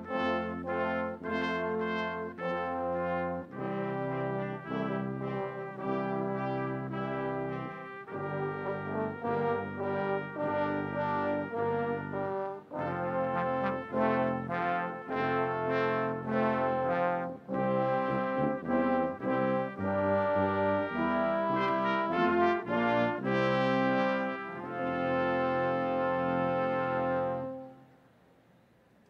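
Brass ensemble of tubas, trombones and trumpets playing a piece in steady chords. It ends on a long held chord that cuts off just before the end.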